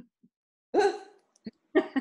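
A short burst of laughter about three-quarters of a second in, with laughing speech starting again near the end.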